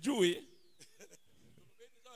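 A man's loud, drawn-out, quavering exclamation into a microphone, cutting off about half a second in, followed by a hush with only faint scattered sounds.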